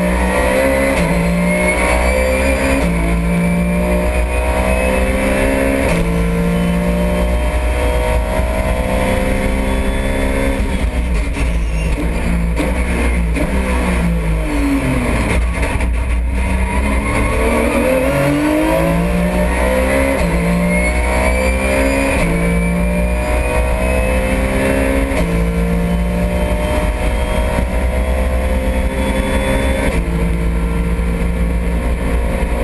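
Porsche 911 GT3 Cup car's flat-six engine heard from inside the cockpit at racing speed. It climbs through several quick upshifts, falls steadily in pitch as the car slows to a low point about halfway, then accelerates hard again through more upshifts, over a steady low rumble.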